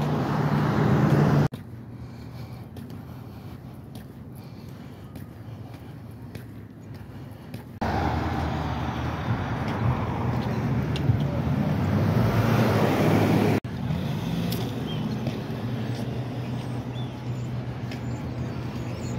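Road traffic on the street alongside: vehicles running past with a steady roar, which drops sharply about a second and a half in and swells up again for several seconds from about eight seconds in.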